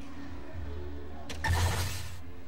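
A soft-tip dart hits the electronic dartboard with a sharp click, and the board then plays a loud, noisy electronic hit sound lasting under a second, which signals that the dart scored a triple 18. A low, steady hum runs underneath.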